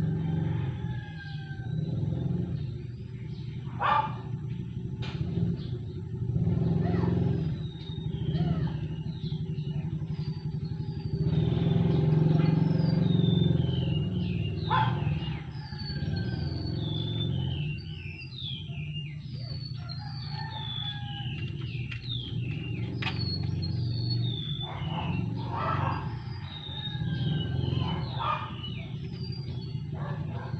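Birds chirping repeatedly over a steady low rumble that swells now and then, with a few sharp clicks.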